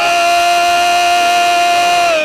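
Church worship singing: a singer holds one long, steady high note, slid up into at the start and let go just after the end.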